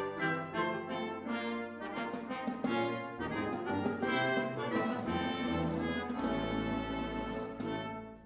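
A small chamber orchestra playing a lively galliard, an Elizabethan-style entry dance, with the brass prominent over winds, strings and harp.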